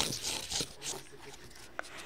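Rustling and knocking of a phone being carried and handled while filming on the move, loudest at the start, with faint voices in the background and a brief high squeak near the end.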